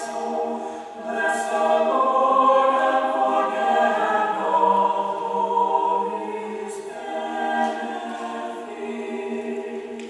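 Mixed-voice choir of men and women singing sustained chords together. It swells in the middle and grows softer near the end.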